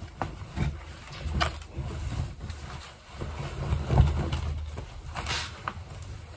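A cotton T-shirt being shaken out and handled close to the microphone: low, uneven rustles and whooshes of fabric, with a few brief sharper rustles. The loudest comes about four seconds in.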